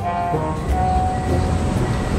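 Music with brass ending within the first second, giving way to a steady rumbling noise at about the same loudness.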